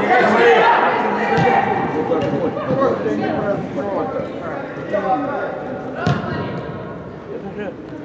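Players shouting to each other across an indoor football hall, many voices overlapping and echoing, growing quieter near the end. A football is kicked with a thud about a second and a half in and again about six seconds in.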